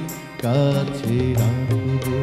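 A live Bengali song: a male voice singing a slow melody with a small band of tabla, keyboard, acoustic guitar and flute. The music dips briefly in the first half second, then the melody comes back in.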